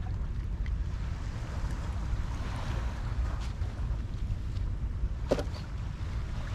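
Wind buffeting the microphone in a steady low rumble, with water washing against shoreline rocks behind it; a single sharp knock about five seconds in.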